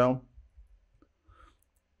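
A spoken word ends, then a few faint computer keyboard keystroke clicks.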